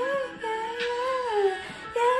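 A woman's voice singing a wordless melodic line: a short note, then a longer held note that swells slightly and falls away about a second and a half in.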